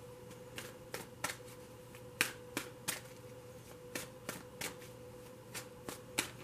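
A deck of tarot cards being shuffled by hand: a dozen or so irregular, sharp card snaps and slaps, with a faint steady hum underneath.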